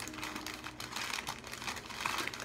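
Irregular light rustling and small clicks as a freshly unpacked plant and its wrapping are handled.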